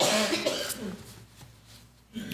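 A person coughing and clearing the throat, a rough burst lasting under a second at the start.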